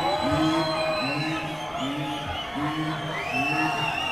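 Concert crowd chanting in unison, a repeated shout a little faster than once a second, with whoops over it.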